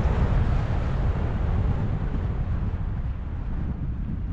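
Wind buffeting the microphone of a camera carried on a moving electric scooter: a steady low rumble.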